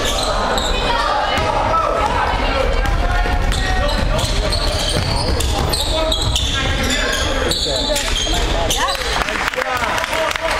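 Basketball game in a school gym: a ball being dribbled on the hardwood floor, with spectators and players calling out over each other and the large hall echoing.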